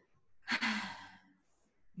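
A person's breathy sigh, once, beginning about half a second in and fading within about a second.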